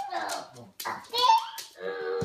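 Young children's voices: high-pitched wordless babbling and squealing, loudest about halfway through.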